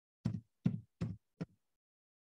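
Four separate keystrokes on a computer keyboard, about 0.4 s apart, heard as short dull knocks with silence between them.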